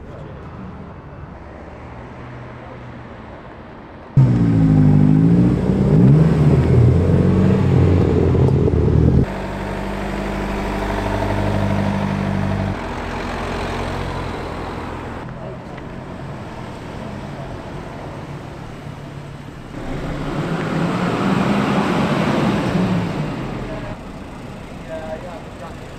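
Volvo and Saab cars driving slowly past one after another at low revs. The loudest is a close pass about four seconds in, its engine note rising and falling for about five seconds; a second car's engine swells near the end.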